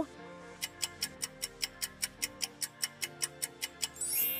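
Countdown-timer ticking sound effect, sharp even ticks at about five a second starting about half a second in, over quiet background music.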